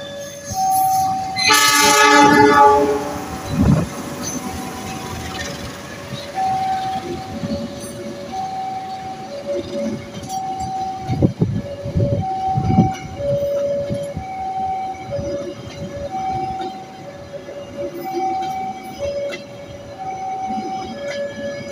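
A railway level-crossing alarm sounds throughout, two tones alternating about once a second. About a second and a half in, a CC206 diesel locomotive's horn gives one blast of about a second and a half, and passing train wheels rumble and knock over the rails after it.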